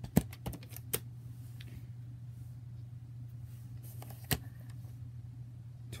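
Sharp plastic clicks and knocks of a VHS cassette and its plastic clamshell case being handled: a few clicks in the first second and one more a little past halfway, over a steady low hum.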